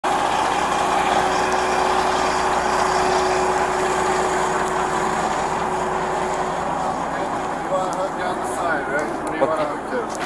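Heavy diesel truck engine idling close by, a steady running sound with a hum that fades out after about six seconds.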